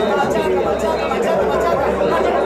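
Football stadium crowd: many voices talking and shouting at once, at a steady level.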